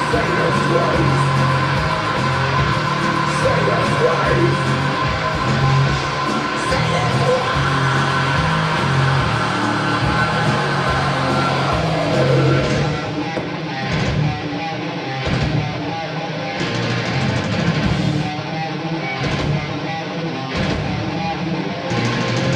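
Heavy metal band playing live: distorted electric guitar over drums and cymbals. About halfway through the mix gets a little quieter and loses some of its top end.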